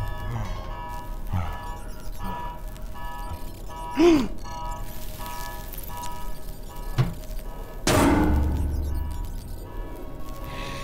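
Animated-film soundtrack: orchestral score with held notes, overlaid with sound effects, a loud swooping sound about four seconds in, a sharp knock at seven, and a loud crash with a low rumble about eight seconds in.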